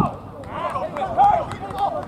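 Men shouting and calling out during a football match, with several voices overlapping and a few short knocks among them.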